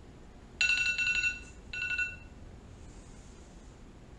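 Electronic phone ringtone: two short high rings, the first about half a second in and a little longer than the second.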